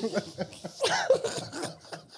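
A man coughing amid brief laughter, a few short vocal bursts, loudest about a second in.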